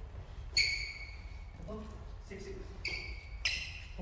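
Sports shoes squeaking sharply on a sports hall floor, three times: about half a second in, near three seconds and just before the end. Faint voices talk underneath.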